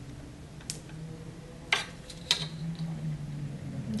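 Three light clicks and knocks of a plastic ruler being handled against a plastic tray and tabletop, spread about a second apart, over a faint steady hum.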